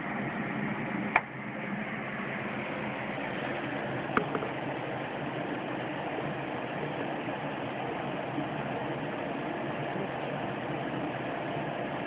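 Steady background hiss with no voices, broken by a sharp click about a second in and another about four seconds in.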